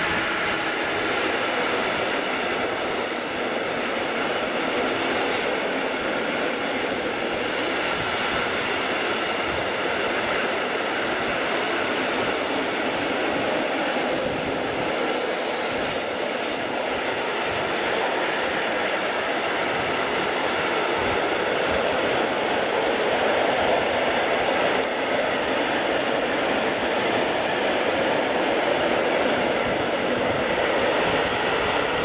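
Long freight train of open gondola wagons rolling past: a steady rumble and clatter of steel wheels on rail, with brief bursts of higher noise about three seconds in and again about fifteen seconds in.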